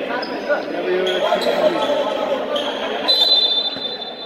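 A basketball bouncing on a hard indoor court under the chatter and voices of people in a large hall. Thin high squeaks come in during the second half.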